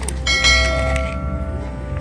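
Background music with a bell chime struck about half a second in that rings out for about half a second: the notification-bell sound effect of an animated subscribe button.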